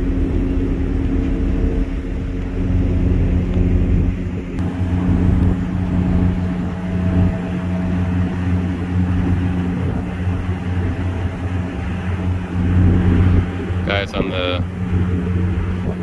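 Steady low drone of ship diesel engines, a deep even hum, with wind noise on the microphone.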